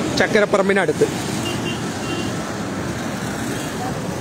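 Steady traffic noise from cars, motorbikes and buses passing on a busy road.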